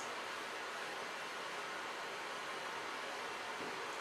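Steady, even hiss of room tone, with no distinct event.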